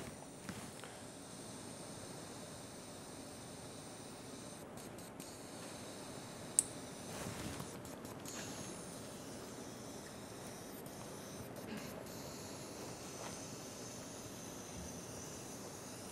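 Low, steady background noise of an endoscopy room, with one sharp click about six and a half seconds in.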